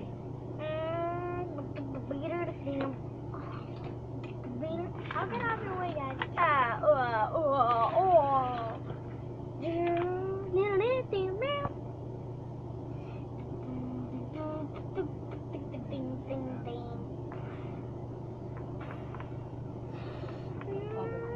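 A child's voice making vocal sound effects and mumbled character voices, its pitch sliding and wavering up and down, loudest from about five to twelve seconds in, over a steady low hum.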